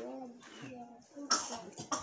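Soft, halting speech from a man's voice in a lull between louder talk, with a short breathy burst about a second and a half in.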